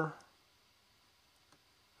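A few faint, scattered computer mouse clicks in a quiet room, just after a spoken word trails off at the start.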